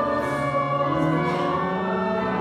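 A choir and congregation singing a hymn to pipe organ accompaniment, with held chords moving from one to the next.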